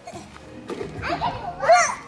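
Young children's voices at play, with a high-pitched, wavering child's call near the end.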